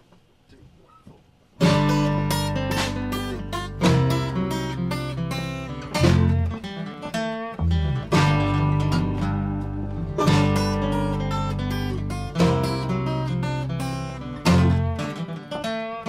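A country band's instrumental intro kicks in about a second and a half in, after a couple of faint clicks. Acoustic guitar strumming and electric bass play over a snare drum beat.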